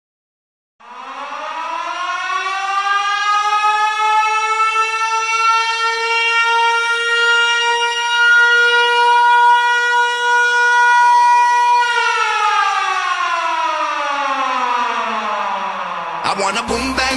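Siren sound, air-raid style: after a moment of silence it winds up in pitch over about three seconds and holds one steady tone. About twelve seconds in it winds down.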